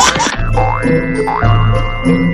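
Playful comedy background music with a steady bass line, overlaid with two upward-sweeping cartoon sound effects in the first half.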